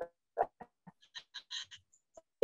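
A voice over a video call breaking up into short clipped fragments, a few low voice snippets and then a quick run of thin high-pitched blips, as the connection stutters.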